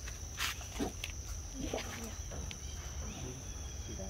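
Steady high-pitched insect drone from crickets or cicadas, with a brief rustle about half a second in and a few faint, short calls or voices scattered through.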